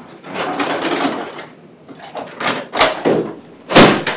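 Rustling, then several sharp clacks of equipment being handled, the loudest near the end.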